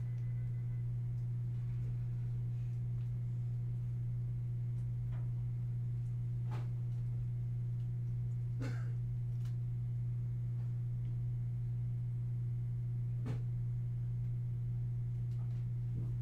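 Steady low electrical hum, one unchanging tone, with a few faint clicks now and then.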